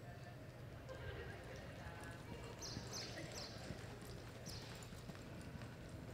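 Faint hoofbeats of a reining horse on soft arena dirt as it moves off from a standstill, over a steady low hum, with a few short hissing sounds in the middle.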